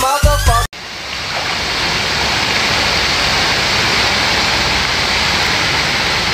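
A dance remix with a rising synth line and a heavy bass beat is cut off less than a second in. A steady rushing hiss without any tone then fades in and holds evenly for about six seconds.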